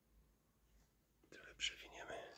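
Near silence for the first second or so, then a soft whispered voice for the last part.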